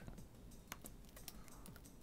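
Faint, scattered soft clicks of book pages being flipped through by hand, barely above silence.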